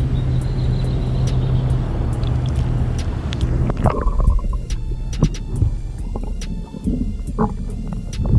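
Water rushing and sloshing around a camera held at the surface of a shallow river; about four seconds in the camera goes under and the sound turns muffled, leaving a low rumble with scattered clicks and knocks.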